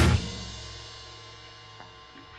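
Punk rock band stopping dead: the full sound cuts off at the start, and the last chord rings out, fading steadily to faint.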